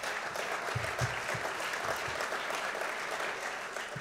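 A large audience applauding steadily, interrupting a speech in approval of the point just made.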